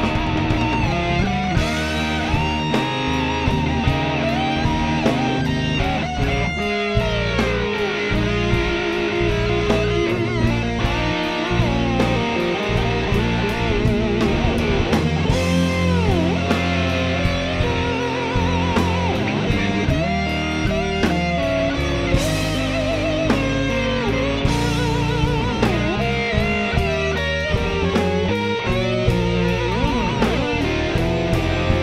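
Electric blues-rock band playing a slow blues instrumental section: a lead electric guitar solos with wavering vibrato and gliding, bent notes over electric bass and a drum kit.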